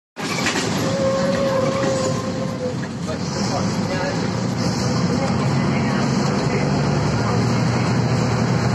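Inside a Volvo 7000A articulated city bus under way: the diesel engine running with steady road and body noise. A steady whine is heard for a couple of seconds near the start.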